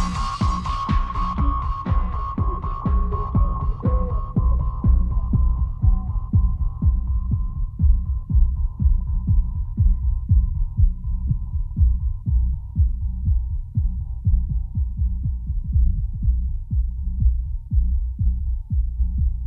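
Electronic dance track whose treble fades away over the first few seconds, leaving only a muffled kick drum and bass at about two beats a second, the music as a deaf listener feels it through a speaker. A thin steady ringing tone runs underneath and slowly fades.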